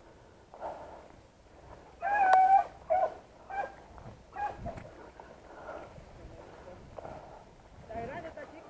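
A beagle hunting dog gives a drawn-out, high-pitched yelp about two seconds in, followed by several short yelps.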